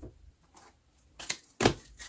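Tarot cards handled on a tabletop, with two short sharp clicks a little past the middle, about a third of a second apart.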